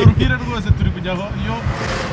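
Voices inside a moving car, heard over the car's steady engine hum and road noise.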